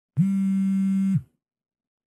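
A synthesized buzzing tone about a second long, rich in overtones, that swoops quickly up in pitch at its start and drops as it cuts off: an intro sound effect.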